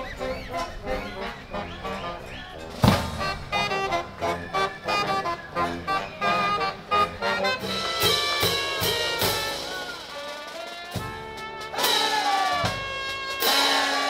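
A street brass band playing over drums: sousaphone, euphonium, trombone, saxophone and trumpet, with a loud drum-and-cymbal hit about three seconds in.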